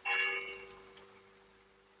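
A single high bell-like chime, struck once and fading away over about a second.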